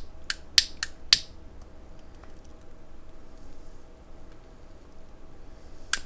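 A lighter being struck to relight a tobacco pipe: four sharp clicks in quick succession in the first second or so, then one more loud click near the end as the flame lights over the bowl.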